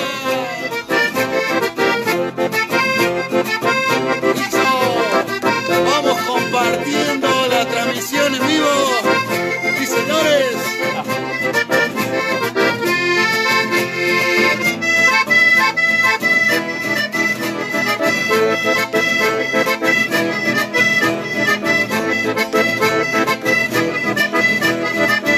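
Chamamé played on accordion with acoustic guitar accompaniment, the accordion carrying the melody. About halfway through, the accordion moves into a run of rapid, evenly spaced notes.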